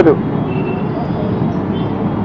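Steady outdoor background noise, an even rumble and hiss with no distinct events, in a pause between a man's speech.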